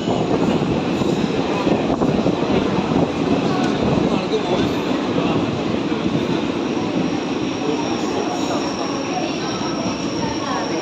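Passenger train coaches rolling slowly along a station platform, with a steady running rumble of wheels on rail heard through an open coach doorway and crowd voices from the platform. A thin, high, steady whine joins about two-thirds of the way in.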